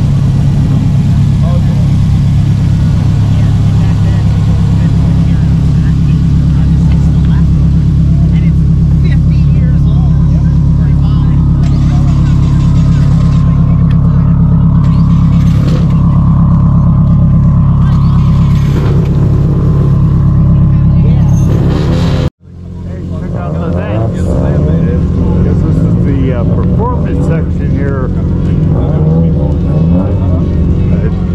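Subaru WRX STI's turbocharged flat-four engine running at low speed, a loud, steady, deep exhaust drone from its quad tailpipes. It cuts off abruptly about three-quarters of the way through, leaving voices and a fainter engine hum.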